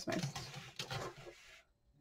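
Irregular rustling and light knocks of hands handling paper and craft tools while a bone folder is picked up. The sounds die away about a second and a half in.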